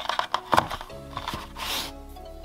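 Background music, over a few sharp clicks and knocks as a small camera is lifted out of a moulded plastic tray, the loudest about half a second in, and a short rustle near the end.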